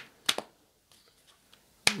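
A couple of short, sharp clicks about a quarter second in, and another sharp click near the end just as speech resumes.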